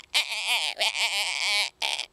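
A man's loud, high-pitched wordless cry with a quivering, wavering pitch, held for well over a second and followed by a short second cry near the end.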